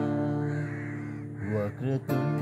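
Acoustic guitar chord left ringing and slowly fading. Near the end come a few short calls with bending pitch.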